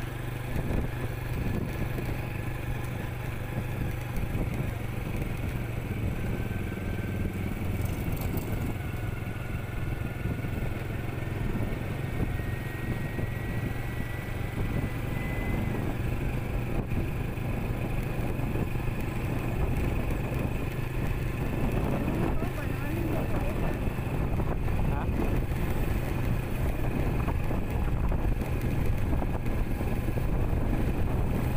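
Motorcycle engine running steadily while riding along a road, a constant low engine hum under a haze of wind and road noise.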